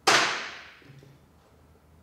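A single sharp metal hammer blow on a shearing handpiece fork set on a steel block, knocking old parts out of it; the ring dies away over about half a second.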